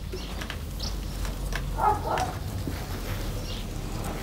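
Handfuls of green berceo grass stems rustling and crackling faintly as they are plaited by hand, over a low steady hum, with a short pitched call about two seconds in.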